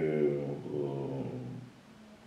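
A man's long, drawn-out hesitation sound, a held "uhh" in his speaking voice, sliding slightly down in pitch and fading out near the end.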